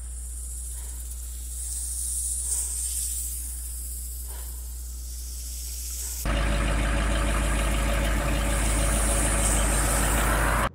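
Quiet outdoor ambience with a faint high hiss that swells and fades. About six seconds in, an old pickup truck's engine cuts in abruptly and runs steadily and low to the end.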